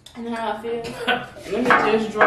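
Clatter of a ceramic mug and the things inside it being picked up and tipped over a glass tabletop, with a voice over it.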